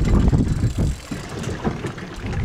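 Low, uneven rumble of wind buffeting the microphone on a boat at sea, with no reel drag heard.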